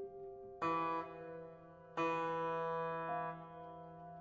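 Amplified Steinway grand piano in a contemporary piece: two loud, bright attacks about half a second in and again at two seconds, each left to ring on, with a softer note entering near three seconds. It is played with one hand on the keys and the other reaching inside the piano onto the strings.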